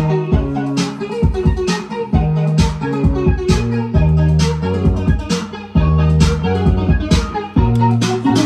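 Electronic music played live on hardware synthesizers. A drum-machine beat lands a little under once a second with lighter hits between, over a synth bass line that holds each note for a second or two, and synth parts higher up.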